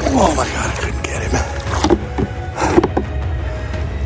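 Background music with a steady low bed, over a hooked fish splashing and thrashing at the water's surface in several short, sudden bursts: one right at the start, then others at about two and three seconds in.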